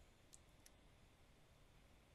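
Near silence: faint room tone, with two small, sharp clicks about a third of a second apart shortly after the start.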